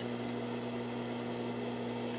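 Steady low electrical hum with an even hiss underneath: room tone, with no other distinct sound.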